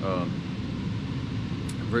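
A steady low machine hum runs through a pause in talk.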